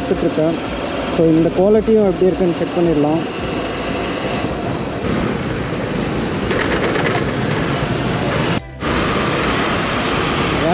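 Riding noise of a commuter motorcycle in traffic, heard on the rider's action camera: a steady mix of engine, road and wind noise. A man talks over it for a couple of seconds about a second in, and the sound drops out briefly near the end.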